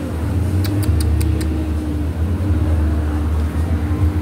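Steady low rumble of a running engine with a steady hum over it, and a few faint clicks about a second in.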